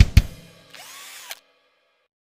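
Intro music ending with two drum hits, then a short whirring sound whose pitch rises and falls before everything cuts off suddenly.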